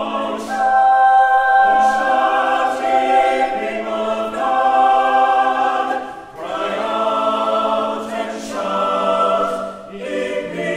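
Mixed church choir singing an unaccompanied anthem in full, sustained chords. The chords change every second or so, with a brief breath break about six seconds in and another near the end.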